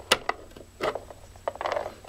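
Plastic action figure being handled, with a few sharp small clicks and taps from its parts and joints. The loudest click comes just after the start, and there is a brief rubbing sound near the end.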